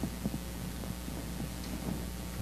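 A steady low hum under soft, evenly spaced thuds about every half second, like footsteps crossing the sanctuary floor.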